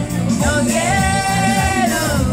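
A woman singing karaoke into a microphone over a backing track, holding one long note in the second half.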